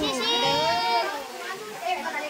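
High-pitched voices talking and exclaiming, with one long drawn-out, gliding call in the first second.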